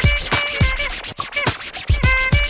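Hip hop DJ mix playing: a beat with a deep kick drum about twice a second under held chord stabs, with turntable scratching.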